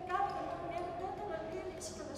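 Speech: a woman's voice delivering lines expressively.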